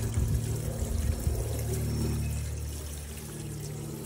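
Hose water pouring into a vertical PVC first flush diverter pipe and filling it, with low steady tones that slowly fade. The diverter is working: the chamber is filling with the first, dirty water.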